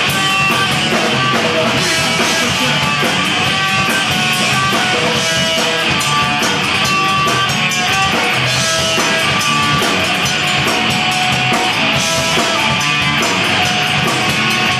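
Hardcore punk band playing live: loud distorted electric guitars over steady drumming, without a break, recorded through a Video8 camcorder's microphone.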